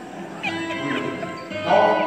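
A man's voice through a stage microphone making a high cry that falls in pitch about half a second in, then a louder vocal burst near the end.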